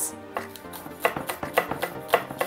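Chef's knife chopping green onions on a wooden cutting board: a run of short knife strikes that comes quicker after about a second, over background music.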